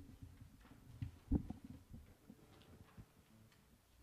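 A few faint, low thumps and knocks in a quiet room, the loudest about a second and a half in.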